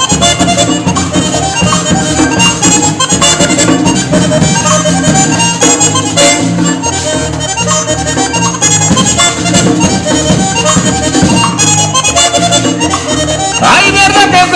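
Button accordion leading a live band in an instrumental passage, over a steady, repeating bass beat.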